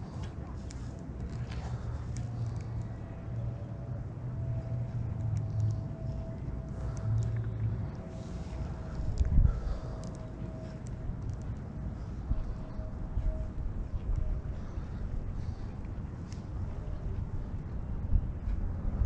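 Outdoor background rumble with a faint steady hum over the first two-thirds, scattered small clicks, and one thump about nine seconds in.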